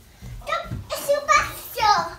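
A toddler's voice: several short, high-pitched calls and squeals, rising and falling in pitch.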